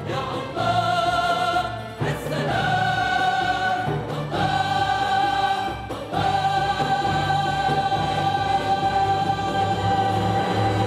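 Mixed choir singing long sustained phrases with a symphony orchestra. The phrases break off briefly a few times, then a single long held note sounds from about six seconds in.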